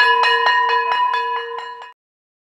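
A bell rung rapidly, about seven strikes a second over a steady ring, fading in the last half second and stopping just before the end.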